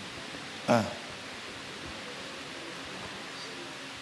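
A man's short 'ah' just under a second in, then a steady, even background hiss with no other sound.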